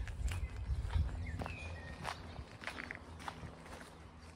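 Unhurried footsteps on a dirt and gravel towpath, a step about every half second, with a low rumble in the first second or so.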